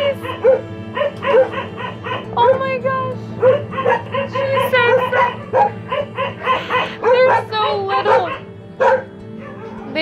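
Many caged dogs barking and yelping over one another in quick, repeated calls, with some drawn-out whining cries about seven to eight seconds in.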